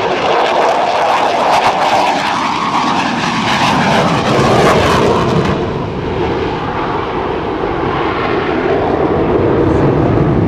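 Twin Pratt & Whitney F100 turbofans of an F-15C Eagle at high power with the afterburners lit, a loud jet roar full of crackle that falls in pitch as the jet passes. About five and a half seconds in the crackle and hiss fall away, leaving a lower, steady roar.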